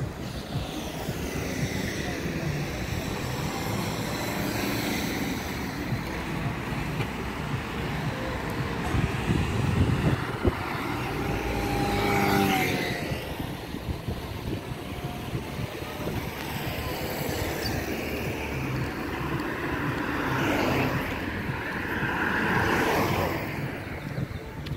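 Street traffic noise, with a motor scooter passing close about halfway through: its engine note rises and then drops in pitch as it goes by. Another louder swell of traffic comes near the end.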